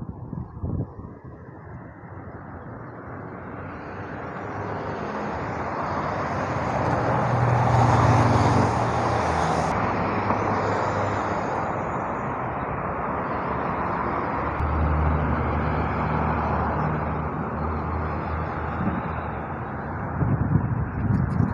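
Road traffic on a multi-lane road: cars passing with tyre and engine noise. It builds up over the first few seconds, is loudest about eight seconds in, then holds steady.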